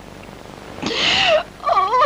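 A woman crying: a breathy, wavering cry about a second in, then wavering, wailing sobs.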